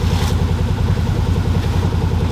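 Side-by-side UTV engine idling steadily, heard from inside the cab.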